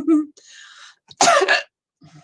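A woman's laugh trailing off with a breath, then one short cough about a second in.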